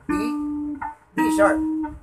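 Electric bass guitar plucked twice high on the G string, D then D sharp a semitone higher, each note ringing steadily for under a second before the next.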